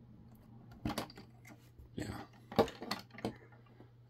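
LEGO plastic bricks clicking and knocking as hands handle and press pieces of the model's roof that have come loose, a handful of sharp clicks with the loudest a little past halfway.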